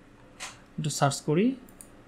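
A man's voice: a breath, then a few short murmured syllables, and a couple of faint clicks near the end.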